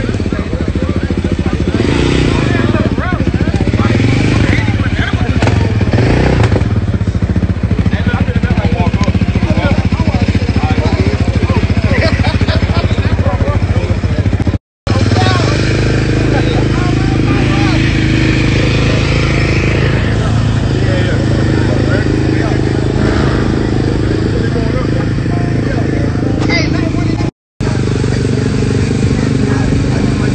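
Vehicle engines running, rising and falling in pitch early on and then holding steady, under constant crowd chatter. The sound cuts out to silence briefly twice.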